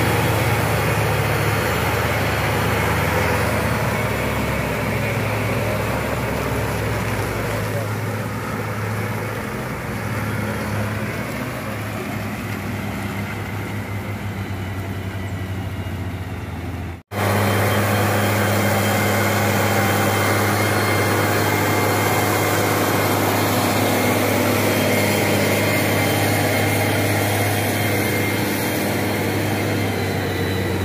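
Heavy diesel engines running steadily: a wheeled tractor chained to a mud-stuck box truck. The sound cuts out for an instant about halfway through, then a steady low diesel drone of an idling coach bus follows.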